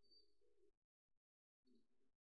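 Near silence, with two faint bird calls: one about three-quarters of a second long at the start and a shorter one near the end.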